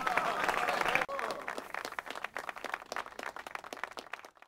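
Audience applauding, with voices calling out over the clapping in the first second; the applause thins out and grows quieter toward the end.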